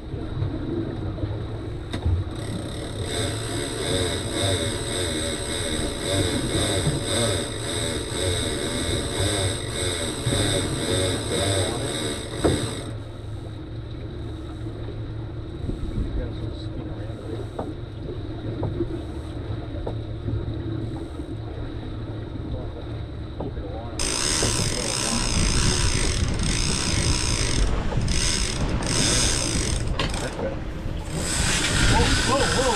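Boat engine running with a low rumble underneath, while a fishing reel buzzes steadily as line runs off it for about ten seconds. Near the end the reel sounds again in short stops and starts.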